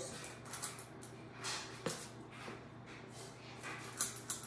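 Faint soft scrapes and a few light clicks of a metal ice cream scoop working thick muffin batter out of a metal mixing bowl and into a muffin pan, with one sharper click a little before two seconds in.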